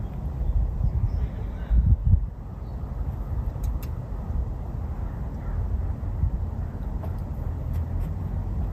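Low, uneven rumble of wind buffeting the microphone, loudest about two seconds in, with a faint pair of sharp clicks a little before halfway.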